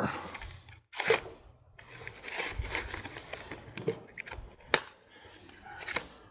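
Stiff plastic blister packaging being cut and pried open with a knife: crinkling, scraping plastic broken by sharp snaps, the loudest about three-quarters of the way through.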